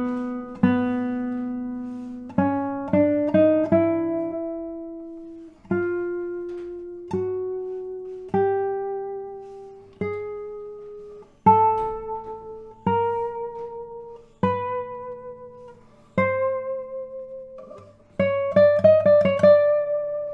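Radially braced spruce-top Robin Moyes classical guitar (2023), played one note at a time up the second (B) string, each note ringing out with long sustain before the next as the pitch climbs step by step; a quick run of notes near the end. The notes sound even, with no short notes.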